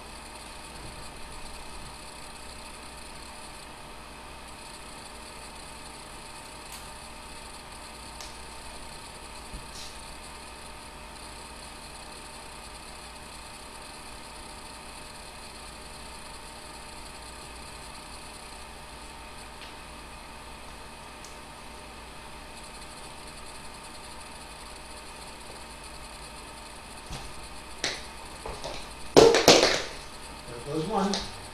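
Steady room hum with a few faint clicks while tap shoes are being put on; near the end a quick cluster of sharp clacks as the metal taps of the tap shoes strike the floor.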